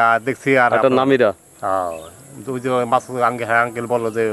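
A man talking, with a steady high-pitched drone of insects behind him throughout.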